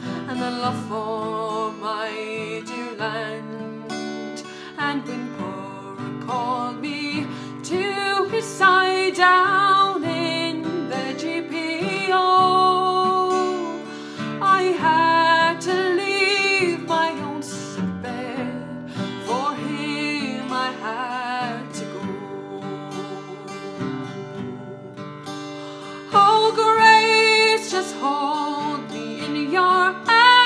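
A woman singing a slow ballad with long held notes, accompanied by a strummed acoustic guitar. The voice swells louder near the end.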